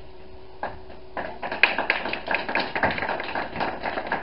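A small congregation clapping in applause, starting about a second in as a dense run of sharp hand claps in a small room.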